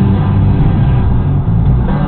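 Inside a moving car: a steady, heavy low rumble, with the car radio's rock music playing under it.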